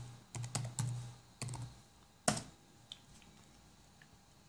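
Keys tapped on a computer keyboard, typing a password at a login prompt: about six quick keystrokes, then one louder click a little past halfway.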